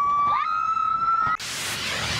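Roller-coaster riders screaming: one long high scream, held and stepping slightly up in pitch, with other voices crossing it. It cuts off suddenly about a second and a half in, and a whoosh of a news graphic transition follows.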